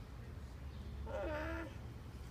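A single short animal-like call, about half a second long, a little past the middle, over a steady low rumble.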